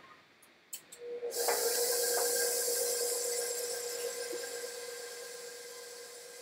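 Electric stand mixer switched on about a second in and running steadily on cake batter, a whirring hiss over a steady motor tone that slowly fades.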